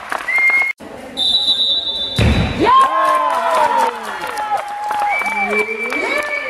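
Handball players and supporters cheering and shouting, many high voices overlapping, with sharp claps. About a second in there is a steady whistle blast lasting about a second, then a heavy thud just after two seconds.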